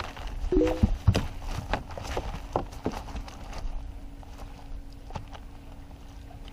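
Fish flopping and slapping against a boat deck and a cast net as shad and a carp are shaken out and picked from the net: irregular knocks and slaps, loudest and thickest in the first couple of seconds and thinning out after, over a faint steady hum.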